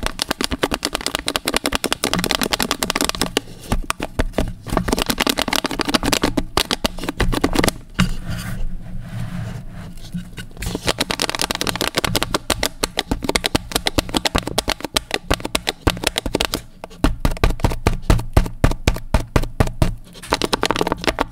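Fingertips and nails tapping and scratching rapidly on the sealed lid and sides of a plastic cereal cup, close to the microphone. A quieter stretch comes about eight seconds in, then quick tapping again near the end.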